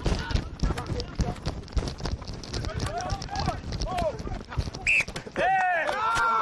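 Rugby players' running footsteps thudding on turf with scattered shouts, then a short, high referee's whistle blast about five seconds in, followed by several players shouting at once.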